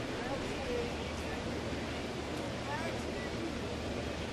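Ballpark crowd noise: a steady wash of many distant voices from the stands, with no single sound standing out.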